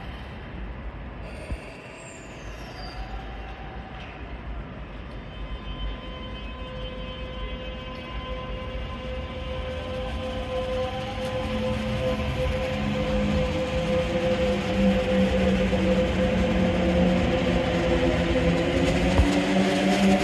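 Kintetsu 22000 series ACE electric train pulling away and accelerating. The VVVF inverter and traction motors whine in several tones that rise in pitch, over a growing rumble of wheels on rails, getting steadily louder as the cars pass close by.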